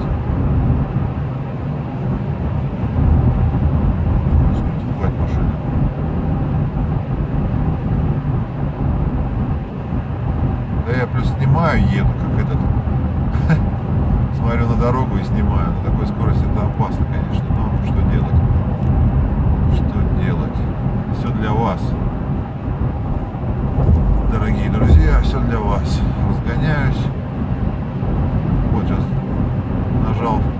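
Steady low rumble inside the cabin of a Toyota Land Cruiser Prado 150 with the 2.8 turbodiesel, cruising at highway speed of about 130 km/h with the engine near 2,000 rpm. Indistinct voices come and go in the middle of the stretch.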